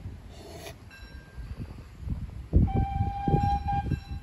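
Steam whistle of the RH&DR 4-8-2 locomotive Hercules as it approaches. A faint whistle sounds about a second in, then one long, steady whistle starts past halfway and holds to the end, over a low rumble.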